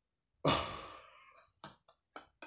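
A man's breathy sigh, a sudden exhale about half a second in that fades away, followed near the end by the first short breathy bursts of a laugh.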